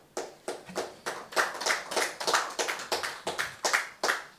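A few people clapping: sparse, uneven claps, several a second.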